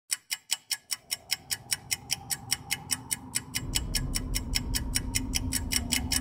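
Clock-like ticking, steady at about five ticks a second. A low rumble and a hum swell in underneath from about halfway, as in the opening of an intro soundtrack.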